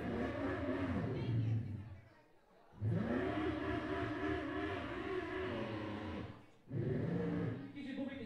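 A man's voice through a PA microphone, calling out long drawn-out wavering vowels in three stretches with short pauses between.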